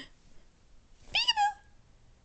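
A baby's short, high squeal about a second in, its pitch shooting up and then sliding slightly down over about half a second.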